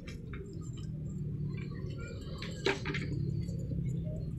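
Indoor market ambience: a steady low hum with scattered faint clicks, and one sharper click or knock about two-thirds of the way through.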